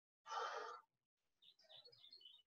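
One short exhaled breath lasting about half a second, from a person doing side lunges, then near silence with a few faint high chirps near the end.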